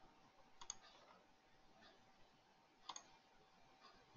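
Faint computer mouse clicks over near silence: a quick pair about two-thirds of a second in, and another click near three seconds in.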